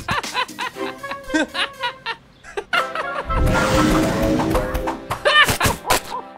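Cartoon soundtrack: music under a character's giggling and snickering, with a rumbling whoosh lasting about a second midway.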